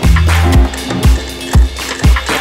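Electronic music track with a steady kick drum, about two beats a second, and hi-hats over it. A held bass note sounds for the first half second.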